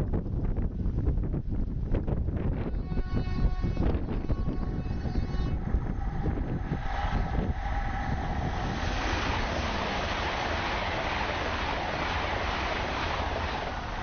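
LNER Azuma Class 800 high-speed train sounding its horn in one steady note of about three seconds as it approaches, then passing close at speed with a growing rush of wheel and air noise.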